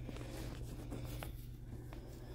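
Faint rustling and light scraping, with a few soft clicks over a low steady hum.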